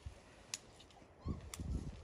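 A puppy scuffling on a deck: two sharp clicks about a second apart, and soft low thumps and scrapes in the second half.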